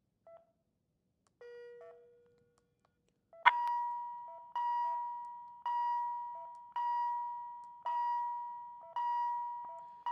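Philips HeartStart MRx defibrillator-monitor beeping. Short, low key beeps sound as the pacer output is stepped up. From about three and a half seconds in, a higher beat tone repeats roughly once a second, each beep fading away.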